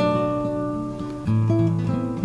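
Classical guitar played in an improvised passage: a chord rings and fades, then new notes are plucked a little over a second in.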